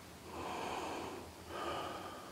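A person breathing hard from the exertion of climbing, two heavy breaths about a second and a half apart.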